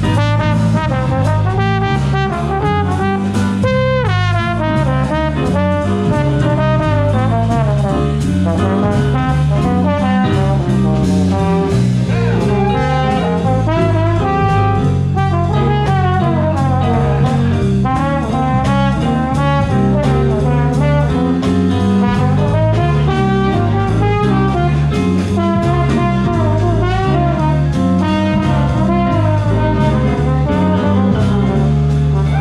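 Live jazz band playing: a horn carries a melodic solo line over a stepping bass line and drums.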